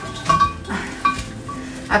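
Artificial flower stems rustling and clinking against a ceramic ginger jar vase as they are pushed in and rearranged, with a brief vocal sound partway through and an "ah" at the very end.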